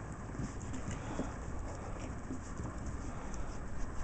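Young Shiba Inu puppies scrambling around close to the microphone on wooden deck boards: irregular light taps and rustling.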